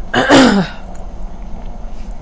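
A woman clears her throat once: a short, harsh burst about half a second long near the start, then quiet room tone.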